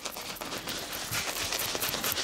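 Shaving brush working soap lather over a beard, a steady rapid fine crackle of bubbles and bristles against the skin.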